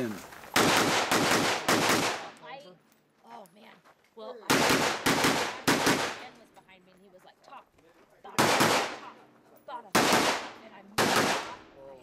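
Semi-automatic rifle fired in quick strings of two to four shots, with pauses of one to two seconds between strings as the shooter moves between positions.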